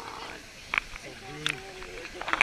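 Steady rush of falling water with two short, sharp splashes close by, and a person's drawn-out vocal sound, one held note, near the end.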